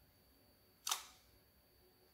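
Clear homemade slime squeezed and pressed by hand in a glass bowl, giving one short, sharp squelch about a second in.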